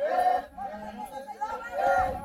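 Group of Maasai voices chanting and singing together for the jumping dance, several voices overlapping in gliding phrases that swell loudest at the start and again near the end.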